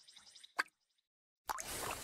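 Cartoon sound effects for a paint bucket and paint: a short plop a little over half a second in, then, after a brief silence, a loud liquid splash about a second and a half in as the paint gushes out.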